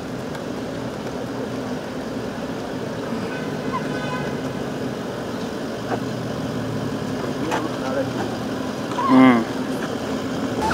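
Steady hum of vehicle engines idling under indistinct distant voices. Near the end comes one loud, brief call with a wavering pitch.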